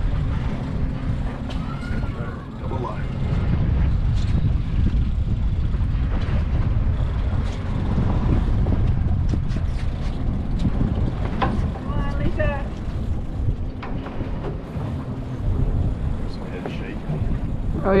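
Steady low rumble of a boat's engine running, mixed with wind buffeting the microphone, with faint voices now and then.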